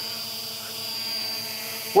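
Holybro X500 quadcopter hovering, its motors and propellers giving a steady hum with a thin high whine.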